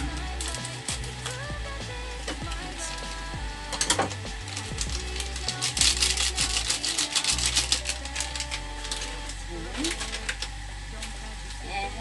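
Background music, with the crackling and crinkling of a foil seasoning sachet being squeezed out over a pan of boiling water, sharpest about four seconds in and again for about two seconds from the middle.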